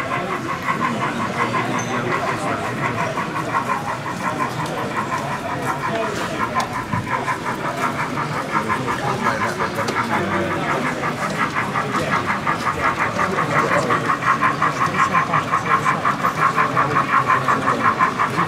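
Sound-fitted OO gauge model steam locomotive chuffing in an even, quick rhythm as it hauls a train of coal wagons, the chuffs growing louder over the last third.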